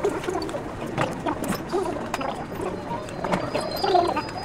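Metal spoons clinking and scraping in bowls of kakigori (shaved ice), with a few sharp clicks, under low talk.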